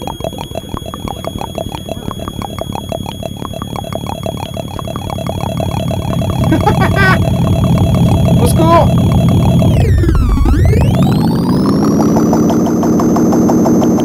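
Eurorack synthesizer patch: a fast run of pinging filter notes from a step sequencer going through a Joranalogue Delay 1 bucket-brigade delay, with the BBD's clock heard as a thin high whine above it. About halfway through it grows much louder. Near the end the whole sound dives down in pitch and swings back up as the delay's clock is swept.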